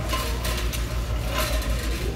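Shopping cart rolling over a hard store floor: a steady low rumble, with light rattles near the start and about a second and a half in.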